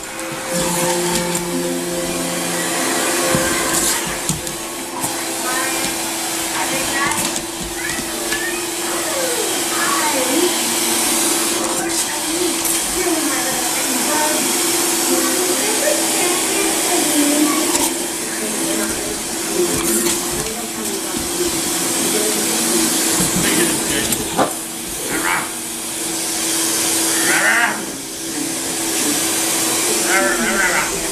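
Vacuum cleaner running steadily: a constant motor hum with rushing air noise.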